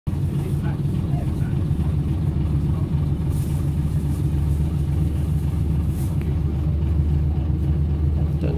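Leyland National Mark 1 single-decker's rear-mounted diesel engine running steadily at low revs, a deep even drone heard from inside the bus saloon.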